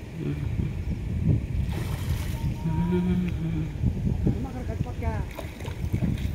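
Wind buffeting the microphone over a steady background of surf, with a person's voice calling out in drawn-out, held and gliding tones in the middle and near the end.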